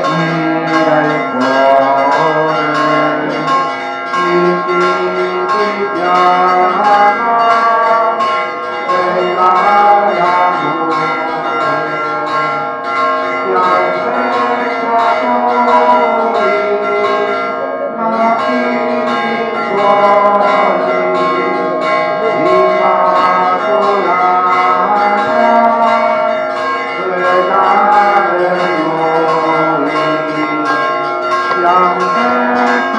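Church bells ringing a continuous peal: strokes follow one another without pause, their tones overlapping and hanging on together.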